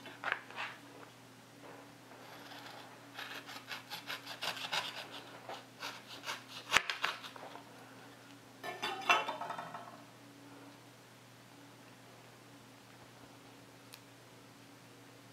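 Kitchen knife sawing through a paperboard Tetra Pak tofu carton on a cutting board: a run of quick rasping strokes for a few seconds, a sharp knock just before the middle, then a short crinkling burst as the carton is worked open.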